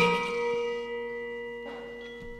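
Outro music: a mallet-struck metal percussion note right at the start rings on and slowly dies away.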